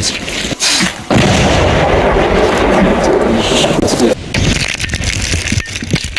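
Controlled demolition of a pile of unexploded artillery shells in a concrete pit. A sudden blast about a second in is followed by about three seconds of loud noise that then drops away, leaving scattered knocks.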